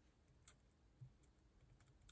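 Near silence: room tone with a few faint short clicks.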